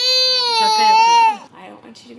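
A toddler girl crying in one long, high wail that ends abruptly about a second and a half in.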